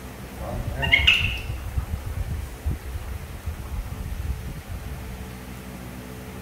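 Baby macaque giving one short squeal that rises steeply in pitch, about a second in. Low rumble and soft knocks run underneath.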